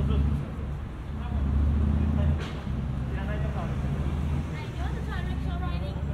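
City street ambience: a low, steady rumble of traffic that swells twice, with passersby talking indistinctly.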